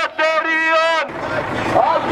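A man chanting a protest slogan through a megaphone in long, drawn-out calls; about halfway it gives way to a marching crowd chanting.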